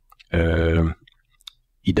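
A man's drawn-out hesitation sound, a held "uh", over a phone line, followed by a few faint clicks.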